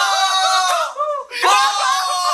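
Several young men screaming and yelling excitedly together, in long held overlapping shouts that break off briefly about a second in and then pick up again.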